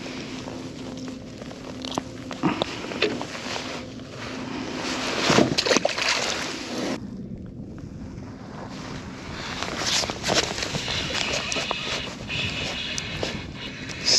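Water lapping against a kayak hull, with clicks, knocks and rustling from hands handling a small tautog just caught. The sound goes briefly quieter about halfway through.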